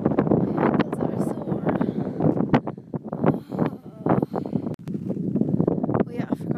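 Very loud wind buffeting an iPhone's microphone, in uneven gusts that swell and dip.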